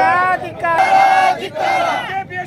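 Crowd of men shouting protest slogans together, several long, loud shouted calls in a row.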